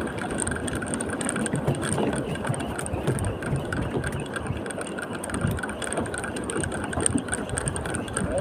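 A boat's engine idling steadily, with wind and choppy water noise on the microphone.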